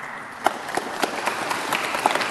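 Audience applauding: many hands clapping, growing louder over the first second or so.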